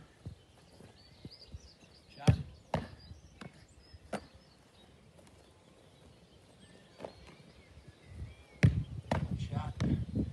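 Dull thuds of a Gaelic football being kicked and struck: a few single knocks, then a louder run of impacts near the end as a shot comes in on the goalkeeper. Faint birdsong in the background.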